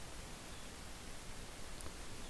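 Faint steady hiss of microphone background noise and room tone, with no distinct events.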